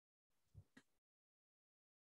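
Near silence, with one faint, brief sound about half a second in.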